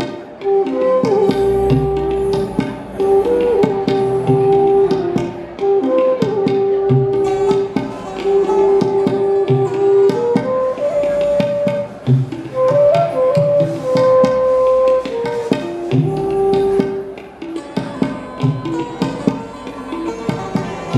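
Bansuri (side-blown bamboo flute) playing a melody of long held notes with slides between them, accompanied by tabla strokes.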